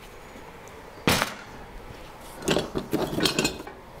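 Cordless drill being handled and set down on a workbench: one sharp knock about a second in, then a run of clicks and clatters. The drill motor is not running.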